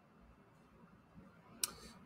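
Near silence, then a single short click near the end followed by a faint breath, as a man draws in air just before speaking.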